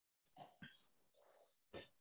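Near silence, with a few faint brief sounds and one short sharp click near the end.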